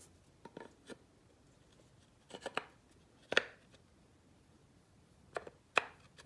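A wooden Remington 1100 buttstock knocking and clicking against a Fightlite SCR lower receiver as it is test-fitted by hand. The sounds come as scattered handling taps, the loudest a little past the middle and another just before the end.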